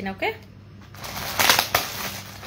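Clear plastic packaging rustling and crinkling as the bag wrapped in it is handled, louder about one and a half seconds in.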